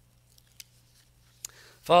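Faint rustling and a few light ticks of paper sheets being handled on a wooden lectern, over a low steady hum. A man's voice comes in near the end.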